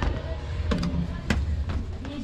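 Footsteps of sneakers going down stone stairs: about four sharp steps, two of them close together near the middle, over a steady low rumble.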